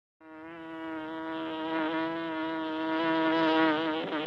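Honey bee buzzing: one steady, slightly wavering buzz that starts abruptly and grows louder toward the end.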